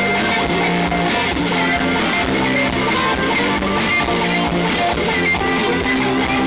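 A band playing live, with guitar to the fore, at a steady, loud level.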